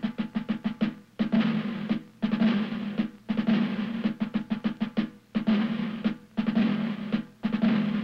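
Title music of snare drum strokes and rolls in short phrases, broken by brief gaps about once a second, over a steady low tone.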